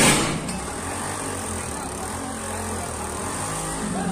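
Loud burst from an electrical short circuit arcing in the overhead wiring of a street-light pole, throwing sparks, that fades over about half a second, with a smaller pop soon after. It is followed by a steady low rumbling noise.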